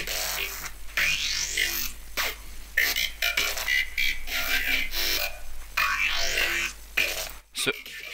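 Glitch hop synth bass line with a steady sub bass underneath. The bass stutters with vocal-like shapes, and twice it sweeps up in pitch. The sub cuts out shortly before the end.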